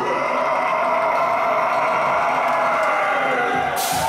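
A metalcore vocalist's long, wavering scream held alone through a stop in the band, the drums and bass dropped out; a cymbal crash near the end brings the band back in.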